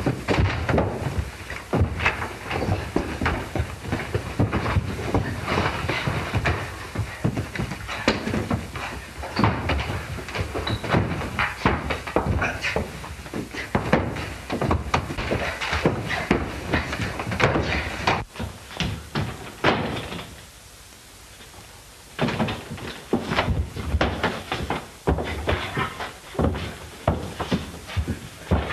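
Scuffle and chase around a room: a dense, irregular run of thumps, bangs and knocks from running feet and furniture being knocked about, with a short lull about two-thirds of the way through.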